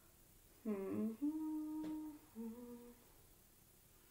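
A woman humming: a 'hmm' that dips in pitch and then holds for about a second and a half, followed by a shorter, lower hum. A single sharp click comes partway through.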